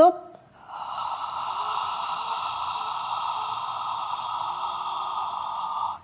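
A woman's long, steady controlled exhale lasting about five seconds, starting about half a second in. It is the breathing-out phase of Pilates lateral rib breathing, with the abdomen held in.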